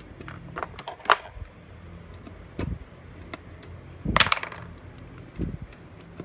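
Light clicks and knocks from working the small centre nut of a quartz wall-clock movement and handling the plastic clock case, fitting the new movement to the dial. A louder clatter comes about four seconds in.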